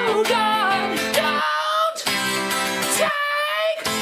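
A three-string Loog guitar strummed through simple chords, with a gliding melody line above the chords. The low chord tones drop out twice, briefly, about halfway through and again near the end.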